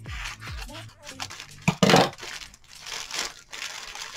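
Plastic poly mailer bag crinkling as it is cut and torn open, loudest in a sharp rip about two seconds in, then softer crinkling as the bag is handled.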